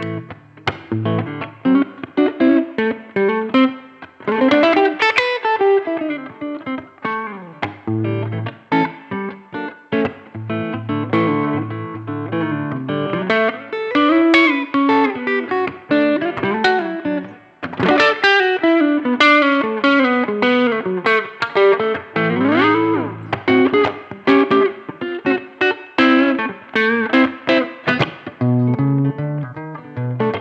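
Electric guitar played through a small Gibson Falcon 5 tube combo amp set to about four on full power: picked lines and chords in a clean, straight-ahead tube tone, with a pitch bend about twenty-two seconds in.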